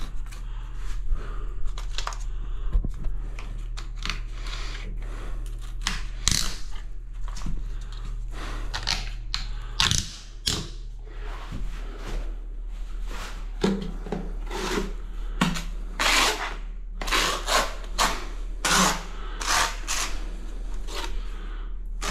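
Tiling work sounds: irregular clicks, taps and scrapes of a tile, levelling clips and a steel trowel, with the trowel scooping and scraping tile adhesive in a bucket and spreading it across the back of a tile in the later part. A steady low hum runs underneath.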